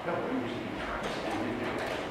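Indistinct talking in a room. A slide projector clicks over to the next slide about a second in.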